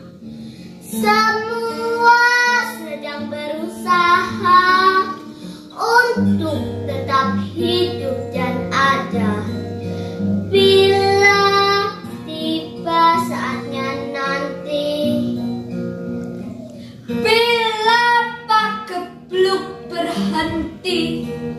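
Young girls singing a slow song in phrases, accompanied by a strummed acoustic guitar.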